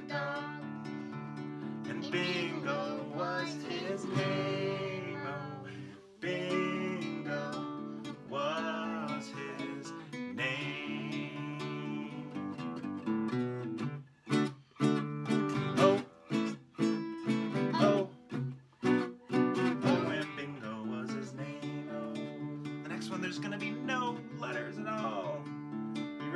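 Fender acoustic guitar strummed in a steady rhythm, with a man and a child singing along. In the middle, a run of sharp hits like hand claps breaks in between short pauses, where the song's letters are clapped instead of sung.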